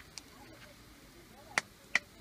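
A serving utensil knocking against an enamel plate as cooked chima (white maize porridge) is dished out: a light click just after the start, then two sharp, briefly ringing clinks close together near the end.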